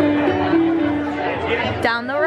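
Several people chatting at once over music with long held notes, with a brief sharp click near the end.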